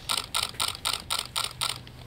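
Camera shutter firing in a rapid burst, about four sharp clicks a second, stopping shortly before the end.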